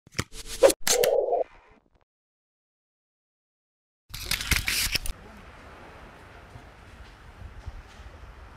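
Logo-intro sound effects: a quick run of sharp clicks and a short buzzy tone over the first second and a half, then dead silence. About four seconds in comes a louder, harsher noisy burst lasting about a second, followed by faint steady background noise.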